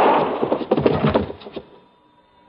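Radio-drama gunfight sound effect: a dense volley of gunshots dies away into a string of scattered sharp cracks and knocks. It stops about a second and a half in.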